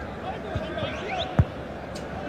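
A football kicked once, a sharp thump about a second and a half in, over children's voices calling across the pitch.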